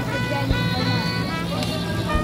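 Street traffic with vehicle engines running, under background music with held notes.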